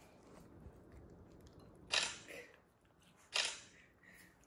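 A poodle eating cake from a plate on the floor, with faint chewing and licking, broken by two sudden sharp noisy sounds about a second and a half apart, the loudest things heard.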